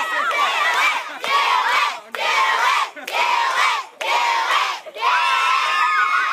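A group of children shouting together in a rhythmic chant, one shout about every second, six times over.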